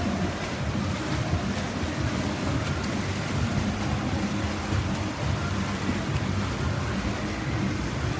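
Steady din of an indoor swimming hall during a butterfly race: swimmers splashing, under the noise of the spectators.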